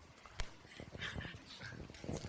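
A single knock of a microphone being handled about half a second in, then faint voices murmuring away from the microphone.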